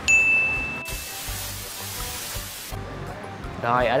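An edited-in chime sound effect: one bright ding that rings and fades over about a second, followed by a steady hiss lasting under two seconds that cuts off suddenly, marking the cut to a new scene.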